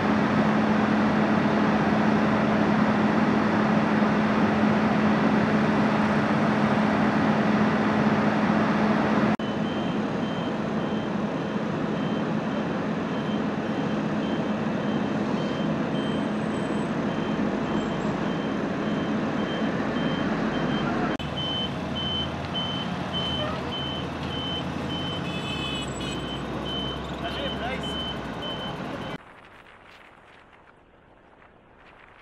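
Armored military vehicles' engines running: loud, steady engine noise with a constant low hum, dropping in level at a cut about nine seconds in. After that a high electronic beep repeats at an even pace, a vehicle's reversing alarm, with brief voices near the end.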